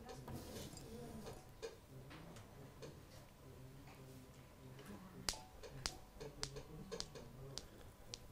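Suspended metal balls of a ballistic dynamometer striking each other: a series of sharp clicks from about five seconds in, the first the loudest, then lighter clicks a few tenths of a second apart.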